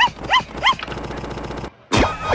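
Three quick yapping calls from the cartoon's soundtrack, each rising then falling in pitch, followed by a fast, stuttering repeat that cuts off suddenly near the end.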